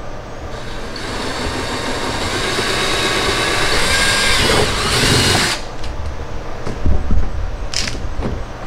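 Cordless drill running for about five seconds, boring a mounting hole up into the underside of a car's rear bumper, its whine rising a little before it cuts off suddenly. A few low knocks and a short burst follow near the end.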